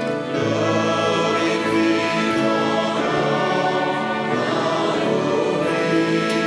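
A hymn played on trumpet and violins, with voices singing along in held notes.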